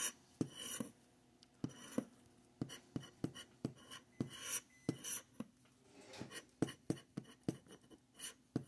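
Plastic scratcher tool scraping the coating off a scratch-off lottery ticket in short, quick strokes, about two or three a second with brief pauses.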